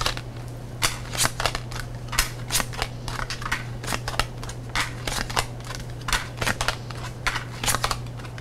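A tarot deck being shuffled by hand: the cards snap and flick against each other in quick, irregular clicks, about two or three a second. A steady low electrical hum runs underneath.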